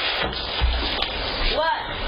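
Harsh, distorted doorbell-camera audio of a tense porch confrontation: constant hiss, a heavy thud about half a second in, and a short shouted cry near the end.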